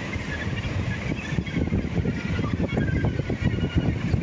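Outdoor coastal ambience: wind gusting and rumbling on the microphone over a steady wash of surf breaking on rocks.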